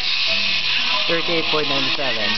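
A voice speaking over a steady high hiss; no other distinct sound stands out.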